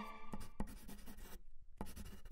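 Scratchy pen-writing sound effect with a few sharp ticks, breaking off briefly past the middle, over the faint tail of a music sting.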